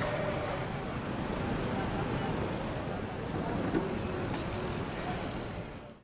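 Steady outdoor street noise, a low rumble with faint distant voices, fading out at the very end.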